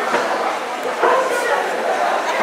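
Indistinct background voices in a busy hall, with a short high-pitched voiced sound about a second in.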